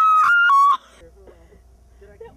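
A young woman screaming, a high-pitched scream held almost at one pitch with two brief breaks, cut off abruptly before a second is out.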